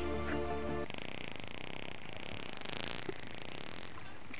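Background music that stops about a second in, over an underwater hydrophone recording of Hawaiian spinner dolphins vocalizing: high whistles gliding up and down, with rapid clicking.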